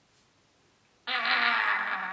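A woman's buzzy vocal noise at a steady pitch, starting about halfway through and held for about a second.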